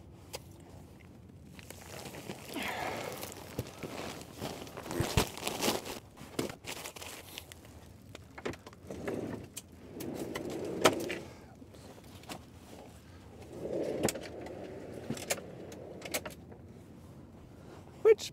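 Handling noises at a van's open rear doors: the quilted foil window insulation rustling as it is moved aside, sharp clicks and knocks of latches and fittings, and a sliding bike tray being pulled out, with footsteps in snow.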